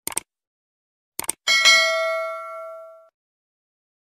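Subscribe-button sound effect: two quick pairs of mouse clicks, then a bright notification-bell ding that rings and fades away over about a second and a half.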